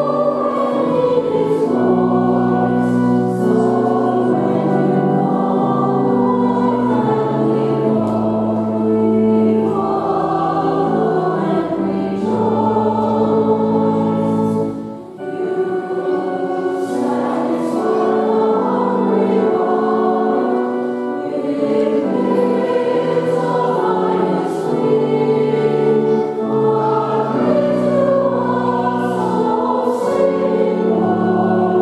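A robed church choir singing together over long held low accompaniment notes, with a brief break between phrases about fifteen seconds in.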